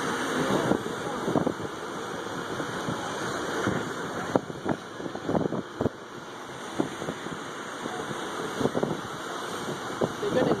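Steady rush of surf washing up the beach, with wind on the microphone, a backhoe's engine running, and short snatches of onlookers' voices.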